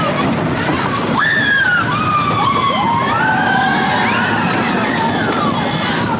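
Vekoma mine-train roller coaster running along its track with a steady rumble, while riders let out several long screams that rise and fall, mostly in the middle.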